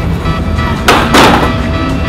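Skateboard hitting a concrete ledge about a second in with a sharp clack, then scraping along it for about half a second, over background music.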